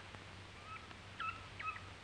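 A few faint, short high-pitched squeaks from a pet monkey, over the steady low hum of an old film soundtrack.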